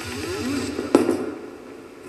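A bowling ball lands on the lane with a single sharp thud about a second in, then rolls quietly. The sound comes through a television's speaker.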